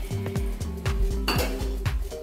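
Steel ladle clinking and scraping against an aluminium pressure-cooker pan of dal as it is stirred, with one sharper clink just past the middle. Background music with a steady beat plays throughout.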